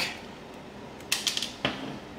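Hand wire strippers squeezing down on the black conductor of an extension cord and pulling the insulation off: a quick run of small clicks and scrapes about a second in, then one sharp click.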